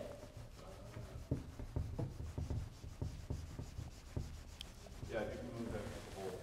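Marker writing on a whiteboard: a faint series of short rubbing strokes at irregular intervals.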